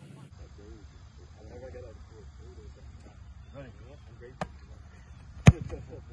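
A football kicked on a field goal attempt: one sharp thud of the kicker's foot striking the held ball, the loudest sound, about five and a half seconds in. A smaller click comes about a second before it.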